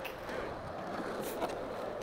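Skateboard wheels rolling on a smooth concrete floor, a steady rumbling hiss.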